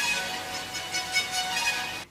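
A musical Tesla coil playing a tune out of its arcs: held notes over a crackling hiss.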